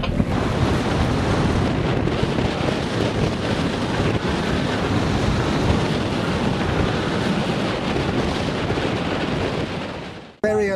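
Strong wind blowing across the microphone as steady, dense buffeting, with the wash of water and waves beneath it. It dips slightly just before the end.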